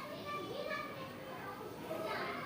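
Children's voices talking and playing in the background.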